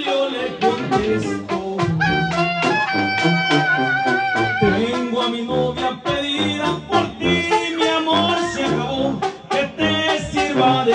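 A tamborazo band playing live: brass horns over a tambora bass drum and snare with cymbal, with frequent sharp drum strokes. About three seconds in, a horn holds one long note with vibrato for nearly two seconds before the band plays on.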